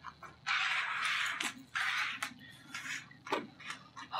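Loose plastic LEGO pieces rattling as they are stirred and sifted by hand: a spell of about a second from about half a second in, a shorter one just after, and a few sharp clicks of bricks being set down.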